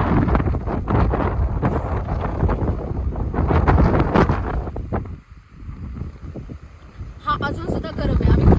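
Gusty wind buffeting the microphone in a low rumble, easing briefly a little past the middle.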